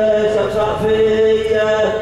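A man's voice chanting a religious recitation, drawing out long held notes that bend and slide in pitch.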